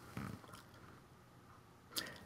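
A very quiet pause in a man's speech: a faint breath a moment in, and a soft mouth click just before he starts speaking again.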